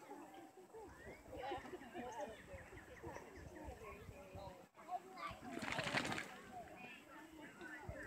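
Faint, indistinct talking among several people, with a brief rush of noise about six seconds in.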